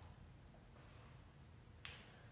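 Near silence: room tone, with one short, faint click near the end.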